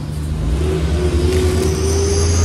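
Truck engine running loud: a deep steady rumble with a hum above it, and a high whine coming in near the end.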